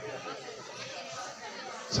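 Faint background chatter of several people talking, a low murmur of voices with no one voice standing out.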